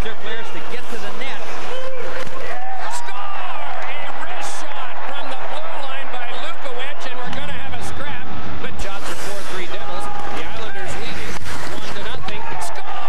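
Televised ice hockey sound: voices over arena crowd noise, with several sharp knocks scattered through, typical of puck and sticks on the ice and boards. The low end fills in about seven seconds in.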